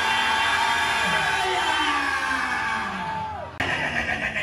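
A long, held shout on one steady pitch, with other voices in a congregation behind it. It falls away about three and a half seconds in and breaks off suddenly, and livelier voices follow.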